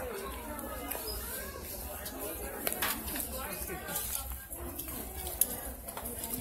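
Indistinct voices of people talking in a shop, with a few light clicks.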